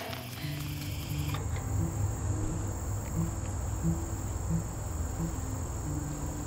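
A steady high-pitched insect drone that comes in about a second and a half in and runs on unchanged, over soft background music with low, repeated notes.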